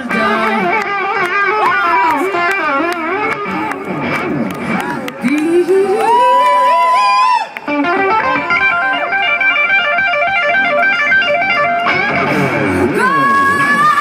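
Electric guitar solo played live with the band, sliding up into a long held high note about six seconds in, then a run of fast repeated notes, and rising into another long held note near the end.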